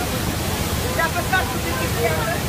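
The Rhine Falls heard close up from a boat at their foot: a loud, steady rush of falling water, with faint voices over it.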